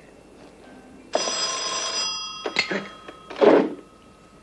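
A telephone bell ringing in one burst of about a second, starting about a second in, its tones lingering faintly afterwards. A short, loud burst of another sound follows near the end.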